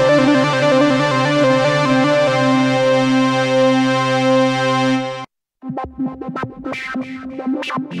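iTuttle software synthesizer on an iPad playing a held chord on its 'Super Lead' patch, which cuts off suddenly a little past five seconds. After a short gap a different patch starts, with quick repeated notes.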